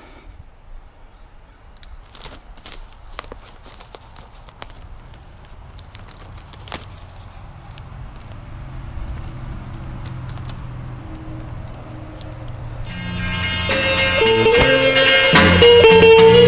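Faint rustling and scattered clicks of a bag of play sand being handled and torn open. About thirteen seconds in, background music comes in and grows to be the loudest sound.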